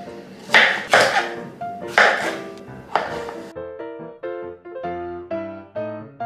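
About five knife chops through courgette onto a wooden cutting board over piano background music; a little past halfway the chopping stops and only the piano music remains.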